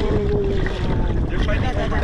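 Large sea bass thrashing and splashing at the surface of a netted sea pen as they take food, with wind buffeting the microphone. A person's voice is held on one note early on.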